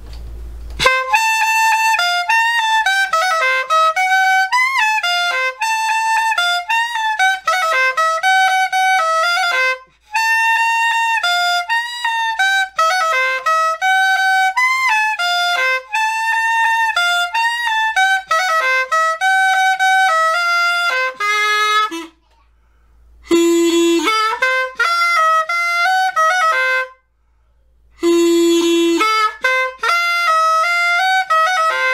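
Flauta de millo, a Colombian cane flute with a reed cut into its own tube, playing a cumbia melody in a bright, reedy tone with quick ornamented notes. The playing breaks off briefly about ten seconds in and twice more near the end, each new phrase opening on a lower held note.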